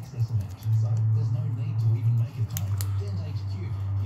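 Gloved hands kneading and spinning grease through a tapered roller bearing, with a few faint clicks about halfway through, over a steady low hum.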